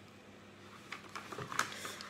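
Faint room tone, then from about a second in, a few short crackles and rustles: a creased diamond painting canvas and its paper-and-film cover being handled and unrolled.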